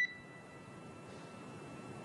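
A single short electronic beep on the mission radio loop, marking the end of a transmission, fading out within about half a second. Then only a steady faint hiss of the open line.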